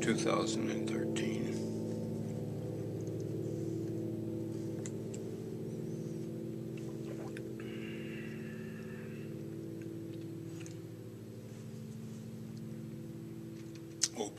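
A 1927 Weber grand piano's last chord ringing on and slowly dying away, several low notes sounding together. A brief faint noise about eight seconds in.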